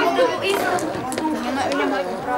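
Several people's voices talking and calling out over one another, words indistinct.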